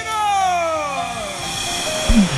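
A man singing into a microphone, holding one long drawn-out note that slides slowly down in pitch.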